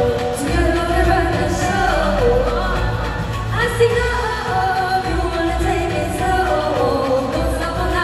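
Live pop singing into microphones over amplified backing music with a steady bass beat.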